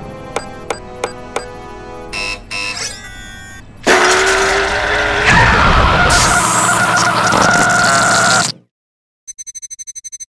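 Cartoon sound effects: a few keypad button beeps, then about four seconds in a loud, long monster scream with a wavering pitch that cuts off suddenly near the end. After a brief gap comes a rapid string of electronic typing beeps, about a dozen a second.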